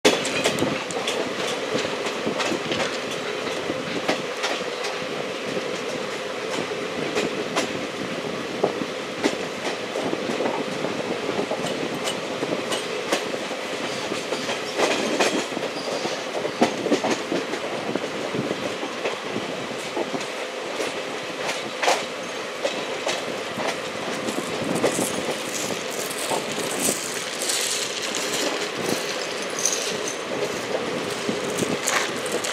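Express train coaches rolling over the rails, heard from on board: a steady rumble of the wheels with irregular sharp clicks as they run over rail joints and points. A brighter, higher-pitched hiss comes in near the end.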